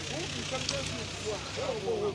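Several voices talking and calling, over a steady low hum from a motor.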